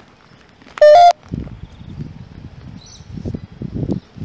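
A short, loud two-tone electronic beep about a second in, stepping up in pitch, followed by footsteps on a path as someone walks along.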